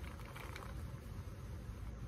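Faint rattle of roasted peanuts being tipped from a jar into a hand, about half a second in, over a steady low room hum.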